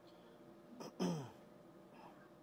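A person clears their throat once about a second in, a short rough burst followed by a brief voiced sound falling in pitch, over a faint steady hum.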